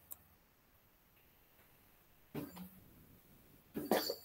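Near silence on a video call, broken about two and a half seconds in by a brief faint voice coming through the call, and a short faint sound just before the end.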